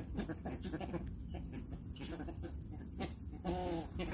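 A flock of American white ibis feeding close by, giving a steady patter of short, low grunting calls.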